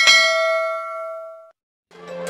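A single bell 'ding' sound effect, struck once and ringing out with several pitches, fading away over about a second and a half. Music begins just before the end.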